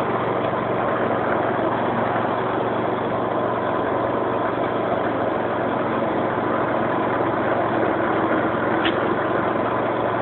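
Crossjet ride-on brush cutter's engine running steadily as the machine works its way through undergrowth, with a brief faint tick near the end.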